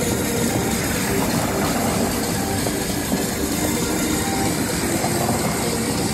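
Steady rumble and road noise of a moving vehicle, an even noise with no breaks.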